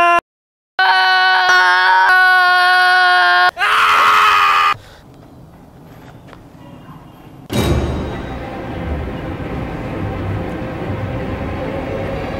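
A person screaming: a long held scream, a moment of dead silence, then another long scream and a shorter, higher one. About seven and a half seconds in, eerie music with a low held drone starts suddenly and carries on.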